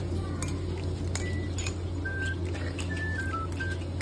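A simple tune of short, single high beeping notes stepping up and down in pitch, starting about a second in, over a steady low hum, with scattered light clicks.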